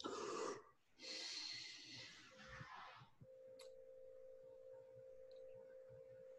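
A person drawing breath hard through the mouth, twice: a short breath, then a longer one that tails off. This is the breathing-in after tasting wine that is used to feel the burn of its alcohol. A faint steady tone hums underneath.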